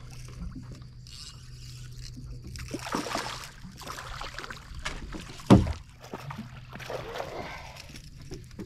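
A small red drum splashing and thrashing at the water's surface beside a small boat as it is landed, in two noisy bursts. A single sharp thump on the boat about five and a half seconds in is the loudest sound. A steady low hum runs underneath.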